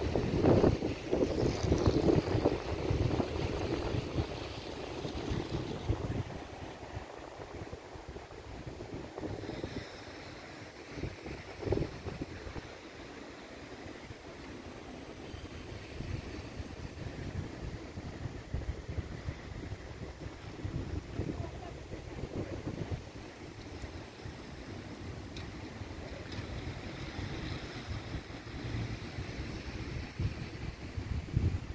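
Wind buffeting the microphone outdoors: an uneven low rumble that rises and falls, loudest in the first few seconds and calmer after that.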